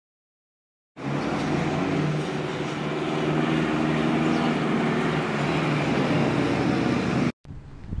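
Street traffic: a motor vehicle's engine running steadily close by, with road noise. It starts about a second in and cuts off suddenly near the end.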